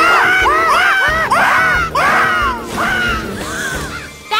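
A flock of cartoon berry birds cawing, many short rising-and-falling calls overlapping in quick succession and thinning out toward the end, over background music.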